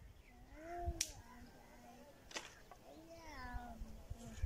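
A cat meowing twice, two drawn-out calls that rise and fall in pitch. Between the calls there are two sharp knocks of firewood being chopped.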